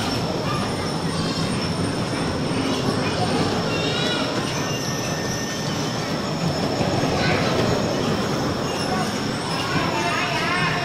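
Electric bumper cars driving around a metal-floored rink, a steady rolling rumble with a thin high whine running over it.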